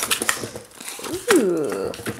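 Cardboard box flaps and paint tubes handled, with crinkling rustles and sharp light clicks early on. A short voiced sound falling in pitch comes just past the middle.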